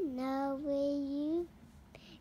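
A young boy singing a Santa song in a drawn-out phrase of held notes, lasting about a second and a half before he stops.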